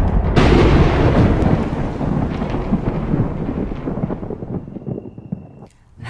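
Thunder sound effect: a crack a moment in, then a long rumble that fades away over the next five seconds.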